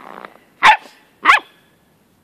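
A dog barking twice: two short, sharp, high-pitched barks about two-thirds of a second apart.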